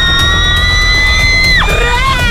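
Background music with a steady beat, over which a long, high-pitched scream is held for about a second and a half and then breaks off with a quick drop in pitch.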